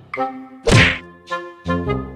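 A loud whack about two-thirds of a second in, over bouncy comedy music of short, repeated pitched notes.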